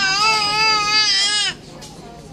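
A baby letting out a long, drawn-out vocalization at a steady high pitch, wavering slightly, which cuts off about one and a half seconds in.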